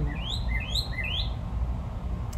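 A songbird calling: a quick run of about five short rising chirps in the first second or so, over a steady low background rumble.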